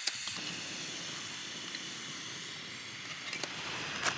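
Jetboil backpacking stove's canister gas burner running with a steady hiss. A sharp click comes at the start and a few light clicks come shortly before the end.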